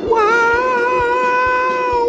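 A character's voice screaming as the roller coaster drops: one high, long, held scream at a steady pitch lasting nearly two seconds.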